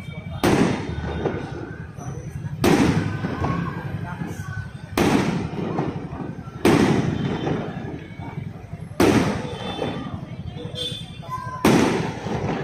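Aerial firework shells bursting overhead: six loud bangs, roughly two seconds apart, each trailing off in a rolling echo.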